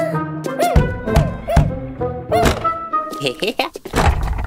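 Knocking on a door in a cartoon, a run of three quick knocks followed by one more, over background music and wordless character vocal sounds.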